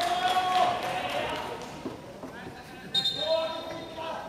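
Voices calling out in a long held call that fades over the first second, with a few sharp claps or knocks, then a shorter call about three seconds in.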